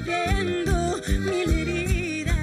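Live cuarteto music: a woman singing the melody over a band with accordion, keyboard and drum, on a quick, steady beat.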